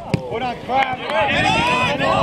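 Several voices shouting and talking over one another throughout, with a couple of short sharp knocks in the first second.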